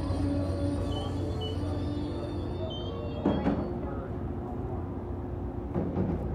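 Passenger train cars rolling past close by with a steady low rumble and two sharp knocks, one about halfway through and one near the end.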